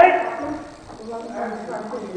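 A loud kiai shout at the very start, its pitch falling, from a practitioner striking with a wooden staff, followed about a second later by a quieter, drawn-out vocal call.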